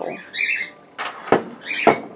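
A plastic mixing bowl and kitchen utensils knocking against a table, three sharp knocks in the second half, the last the loudest. A brief high squeak comes about half a second in.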